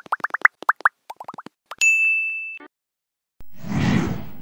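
Motion-graphics outro sound effects: a quick run of about ten short rising bloops, then a bright ding held for under a second, then a whoosh rising near the end.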